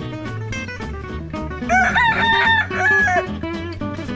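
A rooster crowing once, loud and drawn out in several parts, from a little under two seconds in to about three seconds in, laid over background music with guitar.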